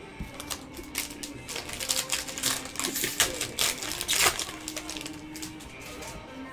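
A trading-card pack being opened and its cards handled, a run of quick crinkles and clicks that thins out after about four seconds. Background music runs underneath.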